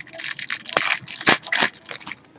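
Foil wrapper of a Topps Chrome baseball card pack crinkling and crackling as it is handled and torn open, a quick run of scratchy crackles with the sharpest ones a little under a second in and again past one second.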